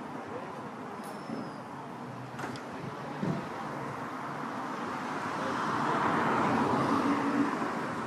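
Street traffic noise, with a vehicle passing that swells up over the last few seconds and eases off near the end.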